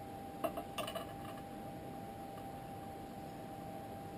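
A few light metallic clicks about half a second to a second in, from a small precision screwdriver meeting the screws and metal frame of an iPhone 4S as they are screwed back in. After that only faint room tone with a thin steady whine.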